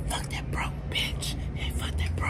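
A person's voice whispering or murmuring words too softly to make out, over a steady low hum.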